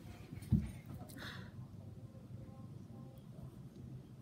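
A single soft low thump about half a second in, then faint rustling, as a child moves about on a hardwood floor handling a blanket.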